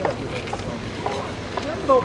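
Pedestrian street ambience: a steady background hum with faint, scattered voices of passers-by, and a few light knocks and rustles as a performer climbs out from under a bedsheet on the pavement.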